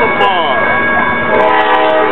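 Horn of an approaching Amtrak passenger train sounding a steady chord of several notes, coming in about one and a half seconds in, over people talking.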